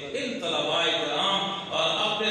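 A man speaking into a microphone in a declamatory, intoned style, with some syllables drawn out for up to a second.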